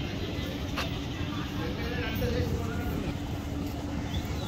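Outdoor riverside ambience: distant voices over a steady low drone, with one sharp click just under a second in.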